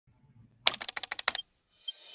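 Computer keyboard typing: a quick run of about ten keystrokes in under a second, the sound for text being typed out on screen.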